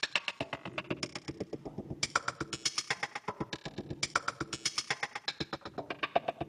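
Sempler sampler-sequencer playing short slices of a recorded springs sample in a fast, even sixteenth-note pattern. Each step is pitch-shifted up or down by its own random amount, by as much as two octaves, so the pattern jumps between high and low pitches.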